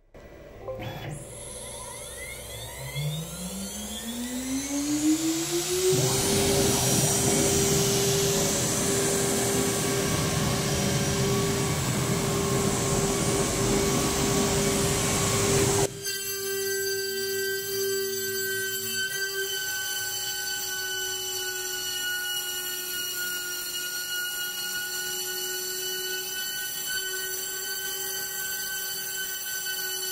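Water-cooled 3 CV CNC router spindle spinning up with a rising whine that levels off about six seconds in, then running at speed with a steady whine. A loud rushing noise fills the middle stretch, and from about sixteen seconds in the spindle runs on steadily as a 40 mm surfacing bit skims 1 mm off the MDF spoilboard to flatten it.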